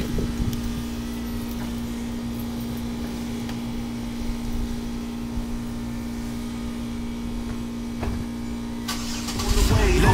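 Chevrolet sedan's engine idling with a steady, even hum. Music comes in near the end.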